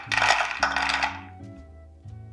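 Roasted hazelnuts poured from a glass bowl into the clear chopper bowl of a hand blender, clattering against the bowl for about a second and then trailing off.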